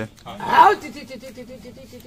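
A man's voice holding a long chanted note with a quick wavering wobble, part of a snake-calling mantra, after a short louder vocal burst about half a second in.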